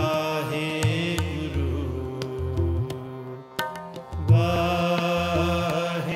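Harmonium chords with tabla accompaniment in Sikh kirtan: the reed harmonium holds sustained notes while the tabla's bass drum gives deep strokes under it. The music briefly thins out about three seconds in, then comes back fuller with a strong drum stroke.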